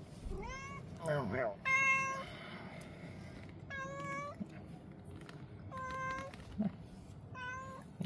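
Domestic tabby cat meowing repeatedly, a string of short, high calls about every two seconds, the later ones held on a steady pitch.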